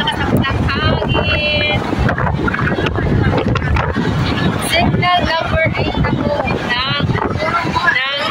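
A woman talking over wind buffeting the microphone, which makes a steady low rumble under her voice.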